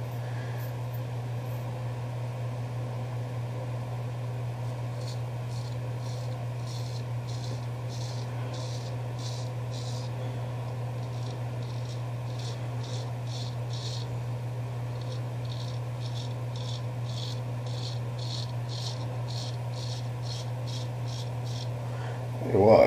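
Straight razor (a Douglas Cutlery custom) scraping through lathered stubble, a short crisp stroke about twice a second in long runs with a brief pause partway, over a steady low hum.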